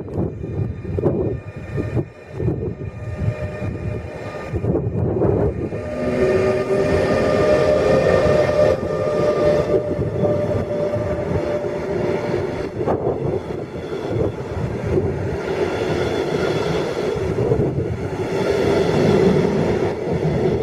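DB Class 182 Taurus electric locomotive and its double-deck coaches running past: a rumble of wheels with sharp clicks on the rails, then from about six seconds in a louder, steady rolling noise with a held hum of tones as the train goes by.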